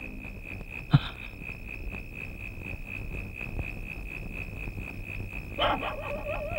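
Steady, evenly pulsing high chirring of crickets in night ambience, with a brief thump about a second in and a short sound with a wavering pitch near the end.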